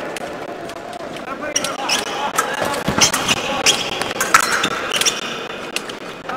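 Épée fencing footwork: shoes squeaking and stamping on the piste, with sharp clicks of blade contact, during a short exchange.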